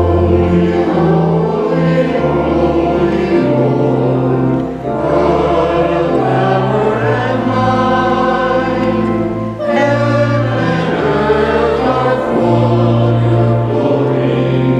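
A group of voices singing a slow liturgical setting together, with organ accompaniment that holds a deep bass line. The sustained chords change every second or two, with short breaks between phrases about five and ten seconds in. This is a sung part of the communion liturgy.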